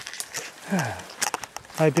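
Footsteps and snapping twigs as a person pushes through dense brush: a scatter of sharp cracks and rustles, with a short falling voice sound about a second in.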